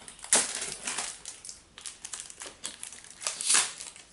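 Trading cards and their foil pack wrappers being handled: irregular crinkling and rustling, with a few sharper crackles.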